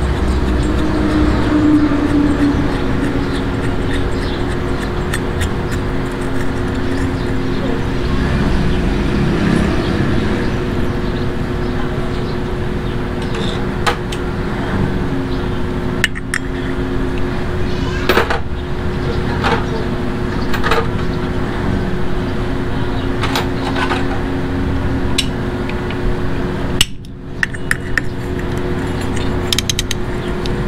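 Steady workshop background hum and noise, with background voices, and scattered light metallic clinks and clicks, mostly in the second half, as motorcycle clutch parts and bolts are handled and fitted.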